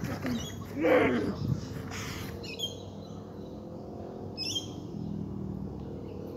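A young man's drawn-out cry of distress about a second in, then a few short high bird chirps in the background.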